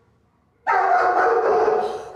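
German shepherd letting out a sudden, loud aggressive snarl from behind kennel bars, starting about two-thirds of a second in and lasting just over a second before fading.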